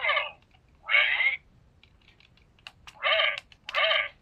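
Short pitched electronic sound effects from a handheld memory game, each lasting about half a second. One sounds at the start, one about a second in, and two close together near the end. Light clicks of taps on the device come between them.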